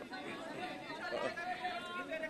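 Background chatter: several people's voices talking low and indistinctly.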